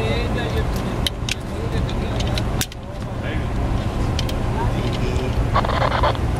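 Steady low rumble of wind on the microphone, with a few sharp metal clicks from rappelling hardware being handled, about one second in and again near the middle. Faint voices come in near the end.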